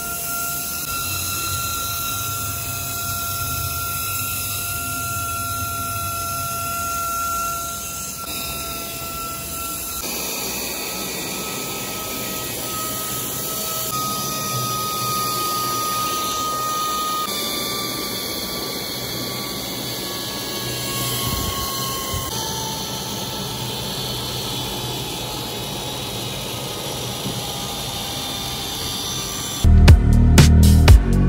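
Small battery-driven DC motor spinning a propeller fan, a steady high whine whose pitch shifts a few times.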